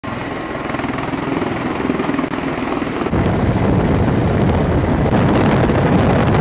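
MV-22 Osprey tiltrotor running on a ship's flight deck, its spinning proprotors giving a rapid rhythmic beat over the engine noise. About three seconds in, the sound cuts abruptly to a louder, steady noise.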